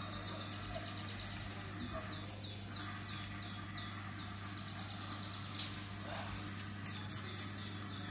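Felt-tip marker scribbling back and forth on paper while colouring in, a rapid run of short squeaky strokes about four a second, pausing midway and resuming near the end, over a steady low hum.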